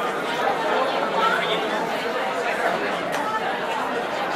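Lunchroom crowd background: many voices talking at once in a steady, even din, with no one voice standing out.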